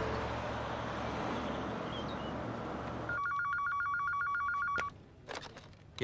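A steady hiss of background ambience, then about three seconds in an office desk telephone rings with a rapid two-tone electronic trill for under two seconds. A few short rustles and a sharp click follow near the end as the handset is picked up.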